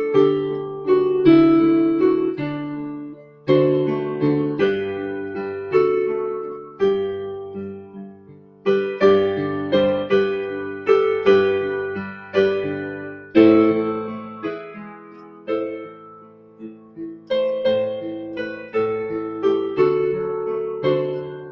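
Piano playing a melody in the right hand over left-hand broken chords in six-eight time, the notes struck in phrases that ring and fade.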